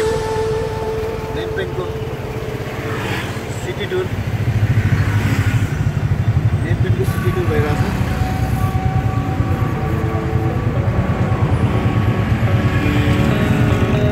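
Tuk-tuk's motorcycle engine running with a rapid low pulse while riding through traffic, getting louder about four seconds in, with road noise and passing vehicles.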